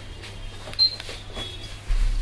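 Retractable-blade chandelier ceiling fan switching off: a short high beep about a second in, then a few light clicks as the blades fold away, over a low steady hum.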